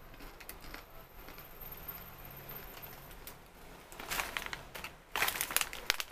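Faint crunching of a crisp fried dough twist being chewed with the mouth closed, then the plastic snack bag crinkling loudly in two bursts, about four seconds in and again near the end.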